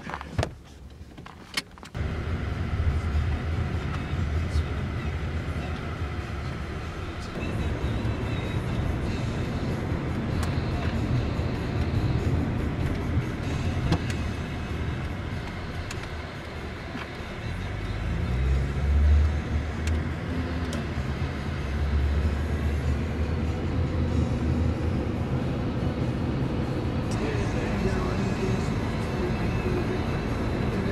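Honda Accord sedan heard from inside the cabin while driving: a steady low engine and road rumble that comes in about two seconds in. A little past halfway the engine note rises and grows louder as the car accelerates, then settles.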